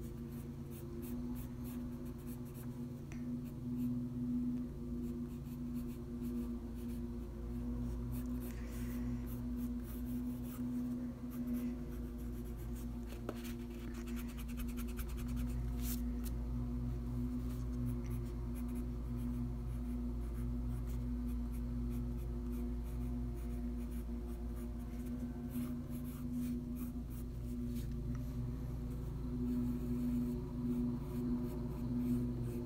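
Graphite pencil scratching across paper in runs of short sketching strokes, over a steady low hum.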